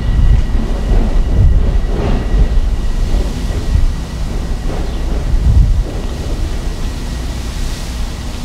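Wind buffeting the microphone outdoors: a loud, gusty low rumble that rises and falls.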